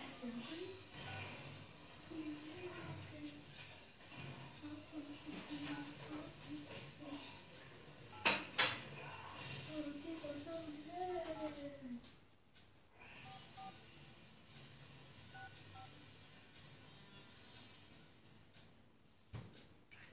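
A smartphone being dialled in a small room: faint keypad beeps and taps under quiet muttered speech, with a sharp click about eight seconds in.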